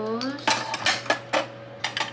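Hard objects clacking against a clear acrylic remote control holder as things are set into it: a handful of sharp, separate clicks over about a second and a half. A brief vocal sound comes at the very start.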